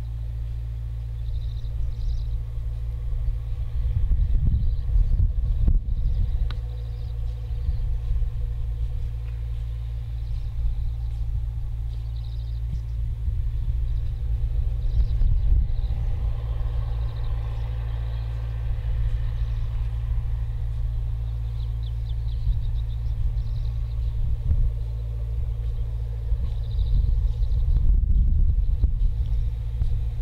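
Low rumble of wind buffeting the microphone in an open field, swelling in gusts a few seconds in and again near the end.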